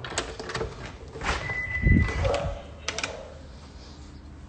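A front door being opened and gone through: sharp latch and handle clicks, a short steady high squeak or tone lasting about half a second, a low thump about halfway through, and a couple more clicks near the end.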